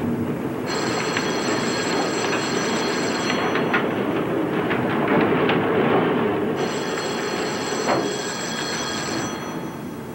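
A telephone bell rings twice, each ring about two and a half seconds long, over a loud, steady rumbling noise.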